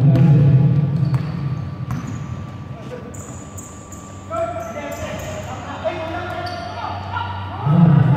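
Indoor basketball game: a ball bouncing on the court with sharp knocks in the first few seconds, sneakers squeaking, and players' voices calling out, loudest at the start and again near the end.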